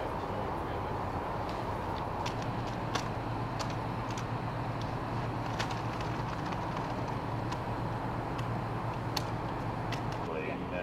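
Steady low hum of an idling vehicle engine, with scattered faint clicks over it.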